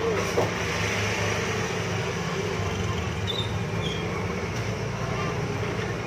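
A vehicle engine running steadily close by: an even low rumble with a hiss over it.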